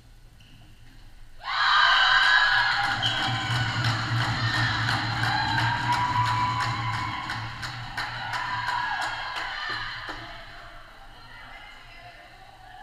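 Sudden loud cheering and shouting in a sports hall about a second and a half in, with music carrying a fast steady beat: a goal celebration in a floorball match. It dies down near the end.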